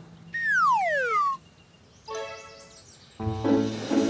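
Cartoon falling-whistle sound effect: one smooth downward glide lasting about a second. A short wavering tone follows, then background music starts near the end.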